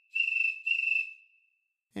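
Cricket chirp sound effect from theCRICKETtoy iPhone app on its 'Fast, Kitchen Cricket' setting: two high chirps about half a second apart, with an echo that fades out after them, like a cricket in the corner of a kitchen.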